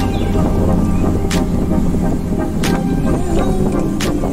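A bus engine drones and the bus rumbles, heard from inside the cabin, under background music with a slow, regular beat about every second and a third.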